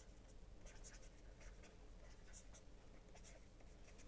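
Faint tapping and scratching of a stylus writing on a tablet screen, in short scattered strokes over a steady low hum.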